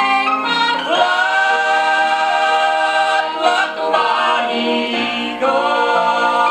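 Southern gospel vocal group singing in close harmony with long held notes, played back from a vinyl LP on a turntable.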